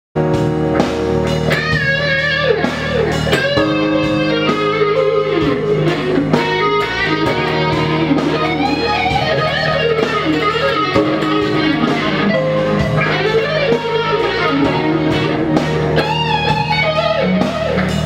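Electric guitar improvising a lead: sustained notes with wide string bends and vibrato, broken up by quick picked runs.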